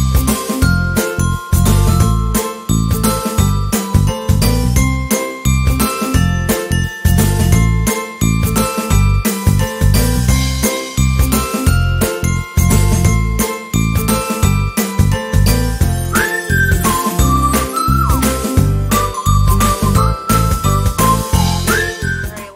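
Upbeat intro music with a steady, punchy beat and a bright melody of held notes; about two-thirds of the way through, a sliding high melody line joins.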